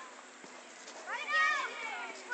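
A child's single high-pitched shout a little over a second in, rising and then falling in pitch, over faint background voices of children playing.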